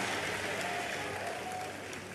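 A large congregation applauding, the clapping slowly dying away.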